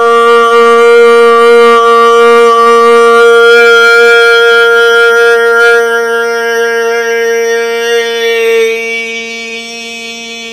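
A man's voice toning: one long sung note held at a steady pitch, bright with overtones, which grows softer and duller about eight and a half seconds in.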